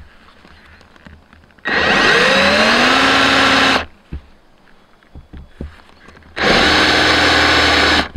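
Handheld power drill running twice, about two seconds each time, as its bit bores into melamine-faced plywood; the motor whine rises as it spins up, then holds steady while it cuts. Soft clicks and knocks come between the two runs.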